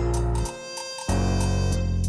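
Instrumental boom bap hip-hop beat: sustained low, pitched notes that drop in level about half a second in and come back loud about a second in, over faint regular high ticks.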